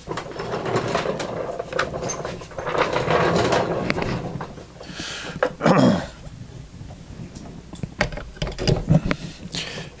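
A small electric motor, one-sixth horsepower and not running, being handled and slid into position on a wooden plank: scraping of its metal base on the wood, then scattered knocks and clicks as it is set in place. A brief falling tone sounds about halfway through.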